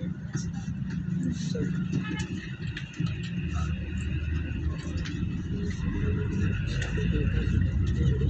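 Low traffic rumble of engines and tyres heard from a moving vehicle, with a van running close alongside. About three and a half seconds in, the rumble drops lower and grows stronger.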